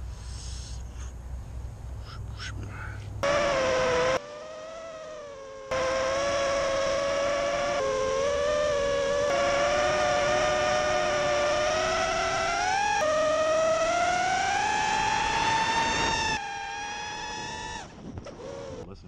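FPV quadcopter's brushless motors whining, the pitch rising and falling with throttle. The sound starts suddenly about three seconds in, is quieter for a stretch soon after, and climbs steadily in pitch near the end.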